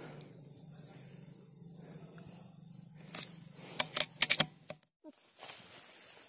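A faint steady low hum with thin high whines, then a quick run of about half a dozen sharp clicks between three and four and a half seconds in, after which the sound cuts out abruptly.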